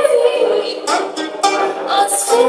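Live Arabic ensemble music: a held female vocal note fades at the start, then plucked strings play a short run of sharply struck notes between sung phrases.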